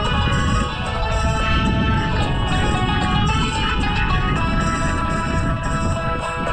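A song with a steady beat playing from a smartphone's speaker held out toward the microphone, with wind rumbling on the microphone underneath.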